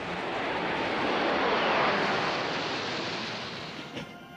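Formation of military jets flying over: a rushing jet noise that swells to a peak about two seconds in, then fades away.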